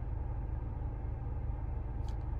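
Steady low rumble and hum inside a car's cabin, even throughout with no distinct events.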